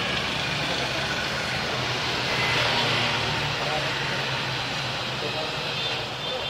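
Cordless drill running steadily under load, boring a hole through a motorcycle top-box mounting plate.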